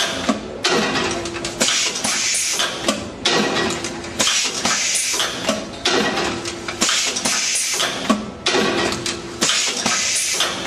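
AP-805 automatic wood venetian blind machine working through its cycle. It makes a repeated sharp clatter and hiss about once a second over a steady machine hum.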